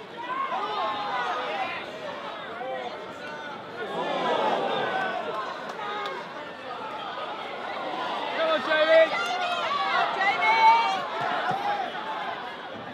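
Crowd of spectators talking and calling out at once, several voices overlapping, with a few louder shouts near the end.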